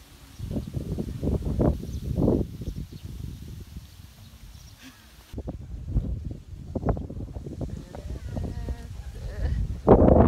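Wind buffeting the microphone in irregular low gusts.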